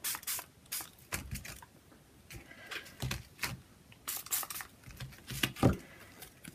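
Small pump spray bottle of homemade food-colouring ink spritzed in quick short bursts through a plastic stencil, about a dozen spritzes in uneven clusters.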